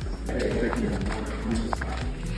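Indistinct voices with background music underneath.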